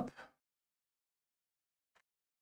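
Near silence after the last bit of a spoken word at the very start.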